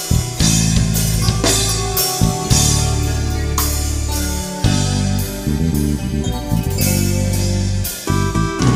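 Live tierra caliente band playing an instrumental passage with no singing: electronic keyboard, electric bass and drum kit, with strong bass notes under regular drum hits.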